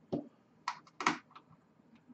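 A few short, sharp clicks and clacks of small metal parts being handled: a freshly built rebuildable atomizer being fitted onto an ohm meter to read its coil resistance.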